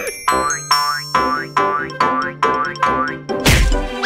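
Cartoon sound effects over music: a rapid run of rising 'boing' notes, about two a second, followed near the end by a loud burst of crashing noise.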